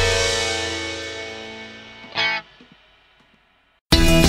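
The last chord of a synth-punk song rings out on distorted guitar and fades away, with a short loud stab about two seconds in. After a moment of near silence, the next song starts abruptly at full volume just before the end.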